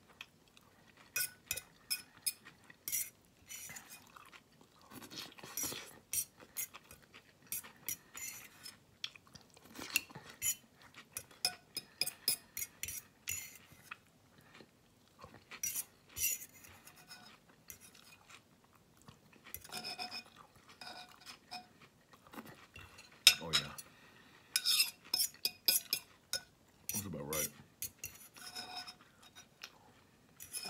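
Metal fork clinking and scraping against a ceramic bowl as the last bits of salad are picked out of the dressing. The clicks come in short, irregular clusters throughout.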